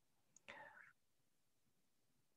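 Near silence: room tone, with one brief, faint breath about half a second in.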